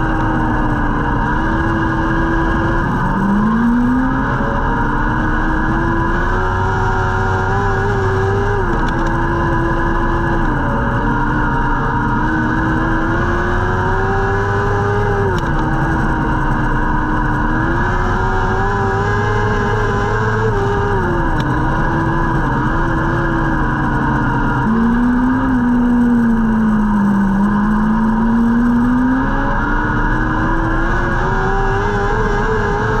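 A restrictor-class dirt track sprint car's engine heard from inside the cockpit. It revs up and falls back in a repeating wave every few seconds, once per stretch of track, with a deeper dip and climb near the end.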